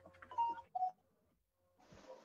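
Video-call audio handing over between microphones: a few faint short sounds over a low hum, then the sound cuts out completely for about a second before the next microphone opens with a faint hiss.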